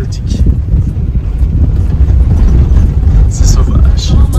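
Car driving along a sandy track, a loud steady low rumble of engine and tyres heard from inside the cabin.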